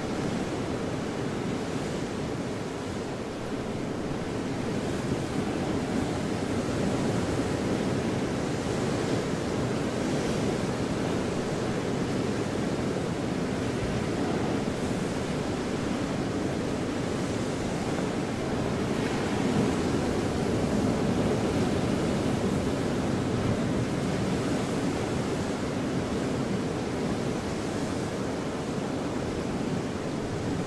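Steady, even rushing noise like ocean surf, swelling slightly about two-thirds of the way in.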